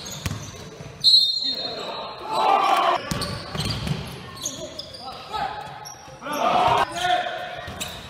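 Basketball bouncing on a wooden gym floor during play, with players' voices calling out at intervals, echoing in a large sports hall.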